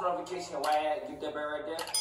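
A man's voice from the played-back clip. Just before the end comes a sharp click and a bright, ringing bell-like ding, the sound effect of an on-screen subscribe button and notification bell being clicked.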